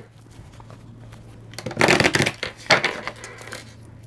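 A deck of oracle cards being shuffled by hand: a quiet start, then a burst of card rustling about two seconds in, followed by a couple of shorter flicks.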